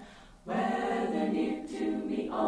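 Choral music: a group of voices singing long held chords, without instruments. The singing comes back in after a brief break at the start.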